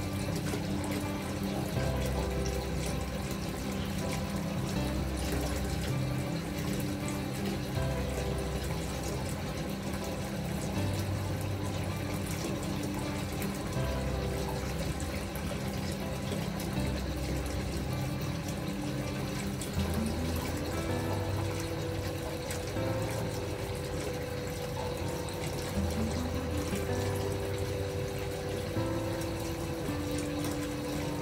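Bathtub filling from a wall spout at full pressure: a steady rush of running water pouring into the filling tub. Gentle, calm music with slow-changing low notes plays over it.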